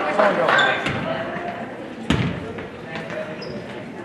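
Basketball bouncing on a hardwood gym floor, several sharp bounces with the loudest about two seconds in, ringing in the large hall. Voices call out over it.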